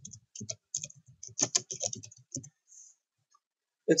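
Typing on a computer keyboard: a quick, uneven run of keystrokes over the first two and a half seconds, then it stops.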